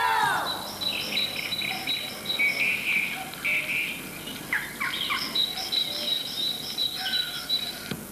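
High, rapid chirping in two bouts, about three or four chirps a second, with a few quick falling whistles between them.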